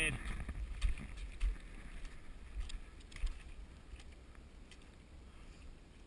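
Footsteps crunching and splashing irregularly over wet gravel, stones and mud in a shallow creek bed, over low thumps from the body-mounted action camera's microphone. The steps are loudest in the first half and grow fainter toward the end.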